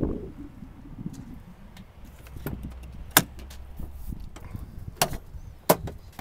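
Rear door of a 2002 Dodge Ram 2500 pickup being opened by hand: handle and latch clicks, three sharp ones in the later half, with handling noise between.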